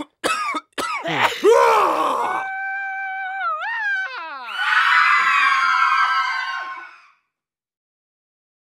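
A run of human vocal sound effects: a few short coughs, then a couple of falling voiced sounds, then high-pitched screams with upward swoops. The screams cut off about seven seconds in.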